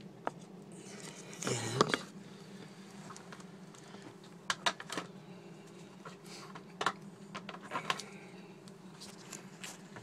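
Scattered sharp metallic clicks and taps from tools and valve parts being handled on an Atomic 4 marine engine block, with a louder bump near two seconds in, over a steady low hum.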